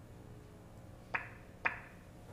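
Two short, sharp knocks about half a second apart, each trailing off briefly, over a faint steady room hum.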